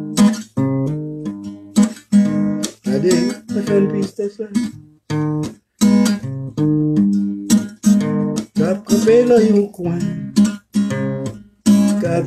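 Acoustic guitar strummed in a steady run of chords, with a man's voice singing along in places, most clearly around three and nine seconds in.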